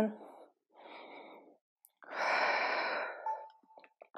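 A woman breathing hard as she catches her breath after a high-intensity interval. There is a soft breath about a second in, then a longer, louder sighing exhale at about two seconds.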